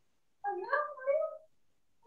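A cat meowing once: a single call about a second long, rising slightly in pitch and then holding.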